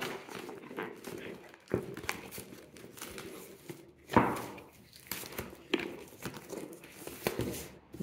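A cardboard Pokémon Elite Trainer Box being handled and worked open: rustling and scraping of the cardboard and its packaging, with a few light knocks against the table, the loudest about four seconds in.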